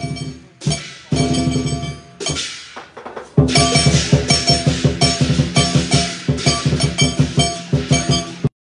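Lion dance percussion: a drum struck with ringing cymbals and gong, in short broken phrases at first, then from about three seconds in a louder, fast, even beat of about four to five strikes a second.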